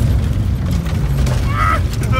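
BMW E36 inline-six engine running hard in third gear, heard from inside the cabin over a heavy low rumble as the car slides across dirt.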